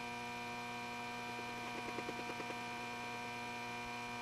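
Steady electrical mains hum in the recording, a buzzing tone with many evenly spaced overtones, with a brief run of faint rapid ticks about two seconds in.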